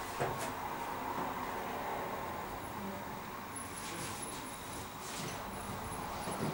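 Steady room noise with a few faint clicks and knocks, and a thin high whine that starts about halfway through.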